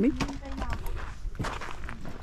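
Footsteps on snow, a string of uneven steps as someone walks across snow-covered ground.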